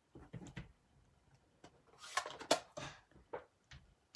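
Clear acrylic stamping block with a rubber stamp handled and set down on a craft mat: a run of light clicks and knocks, the loudest about two and a half seconds in.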